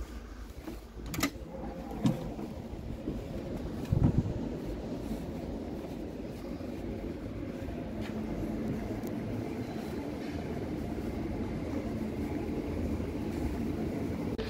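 Glass entrance doors being worked: a couple of sharp clicks, then a heavier knock about four seconds in as the door shuts. After that comes a steady low rumble of room noise in a large indoor hall.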